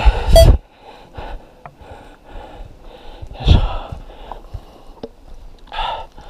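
A hiker breathing hard in short, regular puffs while walking uphill on a forest trail, with a louder burst about three and a half seconds in.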